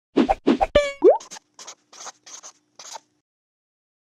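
Channel intro logo sound effects: two short hits, a pitched ping and a quick rising glide, then a string of short bursts of noise that stop about three seconds in.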